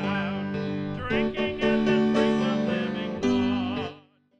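A hymn sung with instrumental accompaniment, the voices wavering over steady held chords. The music breaks off abruptly near the end.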